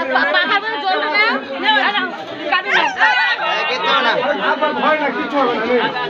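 A crowd of people talking over one another, with many voices overlapping in steady chatter.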